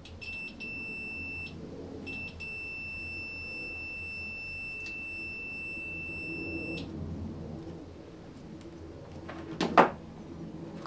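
Digital multimeter's continuity beeper sounding a high, steady beep as its probes touch the ends of a conductive textile swatch: a short beep broken twice near the start, then one long beep of about four and a half seconds, signalling a closed, low-resistance path through the swatch. A brief loud thump near the end.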